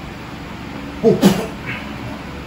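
A single short, meow-like vocal cry about a second in, falling in pitch, over a steady low background hum.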